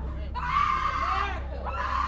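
A woman screaming in distress in a courtroom breakdown: one long cry starting about a third of a second in, and a second beginning near the end, with other voices beneath. A steady low hum runs under it all.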